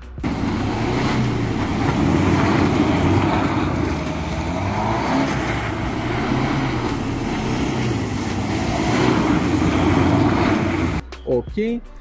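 BMW 120d's four-cylinder diesel engine revving as the car spins circles in snow, its pitch rising and falling over a steady hiss of tyres and snow. It cuts off about eleven seconds in.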